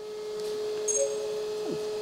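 A steady single-pitched electrical hum, with a short faint beep about a second in.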